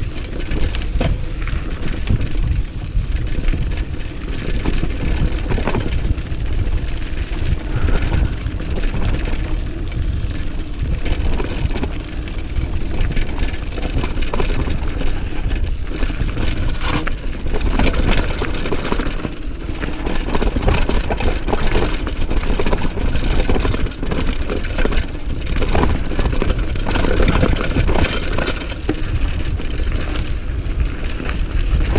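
Mountain bike descending fast over a dirt and gravel trail: a steady rumble of tyres and wind on the microphone, broken by frequent rattles and knocks as the bike jolts over bumps and stones.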